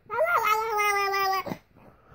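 A baby crying: one long pitched wail with a quick upward lift in pitch just after it starts, then held steady and cut off about a second and a half in.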